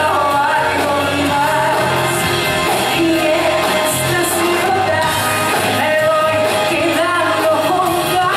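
Live pop-rock band playing, with a woman's sung lead vocal over electric guitar and drums.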